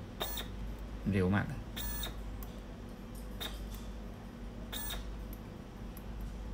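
Four short electronic beeps, about a second and a half apart, as keys on a Vexta SG8030J stepping-motor controller are pressed to step through its menus, over a faint steady hum.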